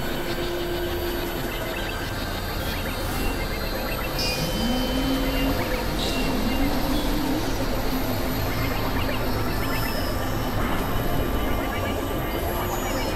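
Experimental electronic noise music from synthesizers: a dense, noisy drone texture over which a low tone glides upward about four seconds in, steps higher near six seconds and then holds.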